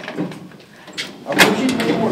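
Metal lift landing doors being forced open by hand: a few sharp clicks and knocks, the loudest about one and a half seconds in, as the door panels are released and slid apart.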